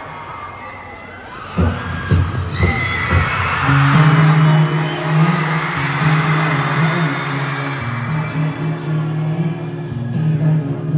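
Live concert music over an arena sound system: a few low thuds like a heartbeat, then a held low chord. An audience screaming and cheering swells over it.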